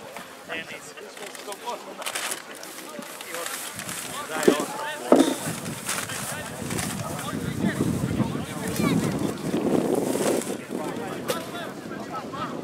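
Voices of players and onlookers calling out and chattering across an open football pitch during a stoppage, with two sharp shouts about midway and a busier stretch of overlapping talk after that.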